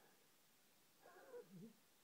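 A groggy man lets out a short, quiet moan about a second in, its pitch wavering down and up.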